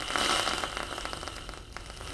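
Aerosol whipped cream can spraying: a crackly, sputtering hiss as cream is piped out onto a mound, loudest early on and easing off toward the end.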